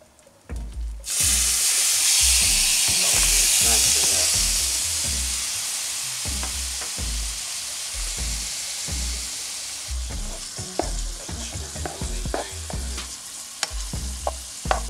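Seasoned raw shrimp dropped into a hot oiled skillet: a loud sizzle breaks out about a second in and slowly dies down as the shrimp fry.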